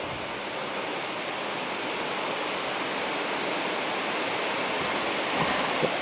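A person breathing out steadily close to the microphone, a long even hiss that slowly grows a little louder.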